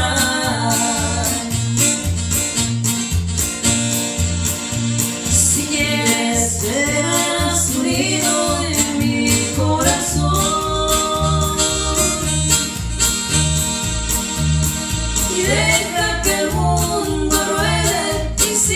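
A ranchera song played and sung live: two women's voices singing together over electric bass and keyboard, with a steady beat.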